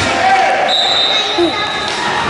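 Referee's whistle blown once in a roller hockey game, one steady high-pitched blast about a second long starting partway in, stopping play. Voices shout throughout, and a sharp knock sounds at the very start.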